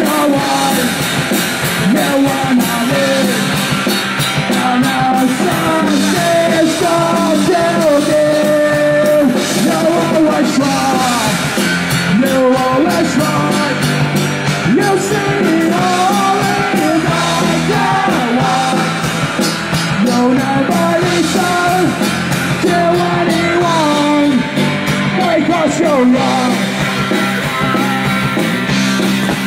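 Live oi! punk rock band playing loud: distorted electric guitars, bass and drum kit, with a melodic line winding over the top.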